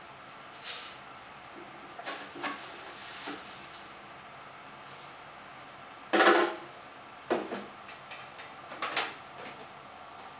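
Handling noises at a kitchen counter while a rice cooker is being worked: scattered knocks and rattles, the loudest a half-second clatter about six seconds in.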